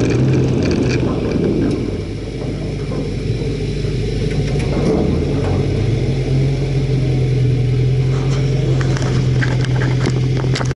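A car's engine running steadily at low revs, heard from inside the cabin, settling into a steady idle as the car comes to a stop. A few clicks near the end.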